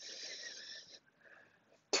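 A person's audible breath, one long breath of about a second, a soft hiss taken while holding a yoga pose between counts.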